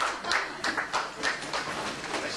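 A small audience clapping, the claps thinning out and fading away.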